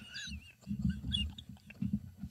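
Men laughing quietly and stifled, in uneven breathy pulses with a few short high squeaks.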